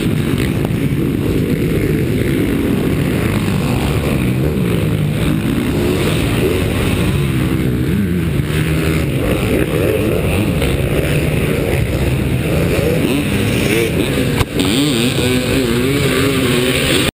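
Motocross bike engines revving and changing pitch over heavy rumble and wind noise on a helmet-mounted camera, with a single knock near the end.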